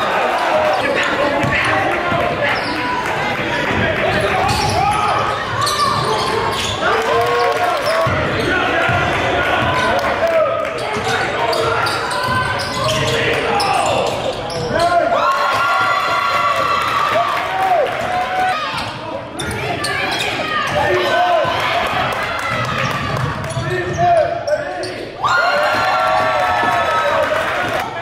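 Live basketball game sound: a ball dribbling on a hardwood court amid continuous court noise, with players and spectators calling out.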